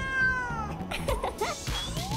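A cat's meow, one call falling in pitch, over background music. Near the end a single rising tone begins.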